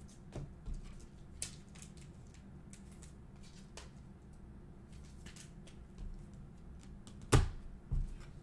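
Trading cards being handled and flipped by hand: scattered soft clicks and slides of card stock, with one sharp knock about seven seconds in and a smaller one just after.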